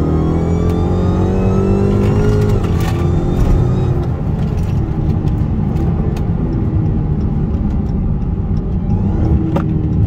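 Dodge Charger SRT Hellcat's supercharged 6.2-litre HEMI V8 accelerating, heard from inside the cabin. The engine pitch climbs for the first two and a half seconds, drops sharply at a gear change, then runs steadier with a second, gentler climb.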